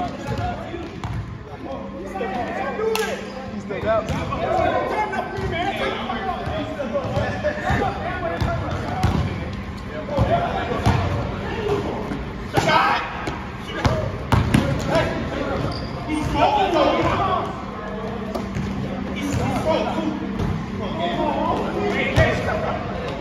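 A basketball bouncing on a hardwood gym floor during play, with a few sharper thumps scattered through, under indistinct players' voices talking and calling out; a laugh near the end.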